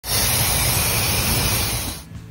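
Aerosol cleaner sprayed through its red straw onto a removed oil cooler, one steady hiss lasting about two seconds and fading near the end.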